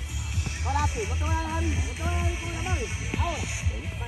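Several voices calling out over one another, with music in the mix and a steady low rumble underneath.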